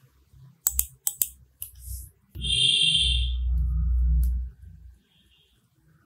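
A few sharp computer-mouse clicks, then, about two seconds in, a steady two-second sound with a low rumble and a high ringing tone, which cuts off.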